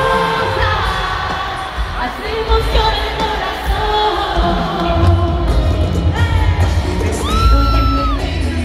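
Live bachata band playing through a stadium sound system, heard from the crowd: a male lead voice sings long held notes over guitars and percussion. Heavy bass comes in about five seconds in, and a long sung note rises and holds near the end.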